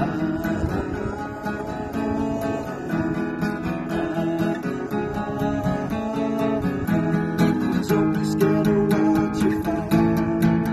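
Acoustic guitar strummed in a steady rhythm of chords, with a man singing along.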